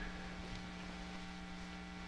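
Low, steady electrical hum with faint hiss, the background tone of the recording between spoken phrases.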